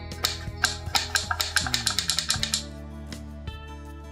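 The mechanism of an assembled wooden carbine model clicking as it is worked by hand: a quick run of about fifteen sharp clicks that stops about two and a half seconds in, followed by a couple of single clicks. Background music plays underneath.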